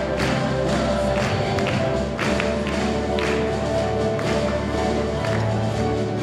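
School orchestra playing, with held notes and some short percussive taps.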